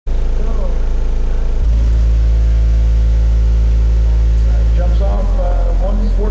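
Car-audio subwoofers in a sound-pressure competition vehicle playing a very loud steady low bass tone for an SPL meter reading. The tone steps to a new pitch about one and a half seconds in and again about five seconds in, with voices talking over it near the end.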